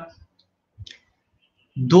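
A brief pause in a man's talk: near silence with one faint, short click a little under a second in, then his speech starts again near the end.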